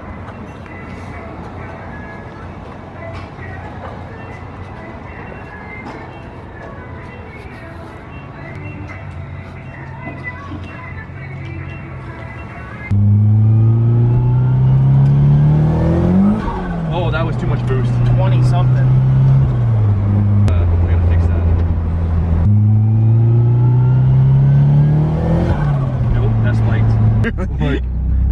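Turbocharged Nissan 240SX drift car accelerating hard, heard from inside the cabin. About halfway through, the engine note jumps in loudness and climbs in pitch, drops at a gear change, holds, then climbs again in a second pull. It is running about 22 psi of boost because its boost controller is not hooked up. Before that comes a quieter, steady stretch.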